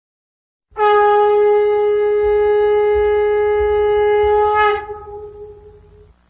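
A conch shell (shankha) blown in one long, loud, steady note of about four seconds. Its pitch dips slightly at the end, and the note then trails away.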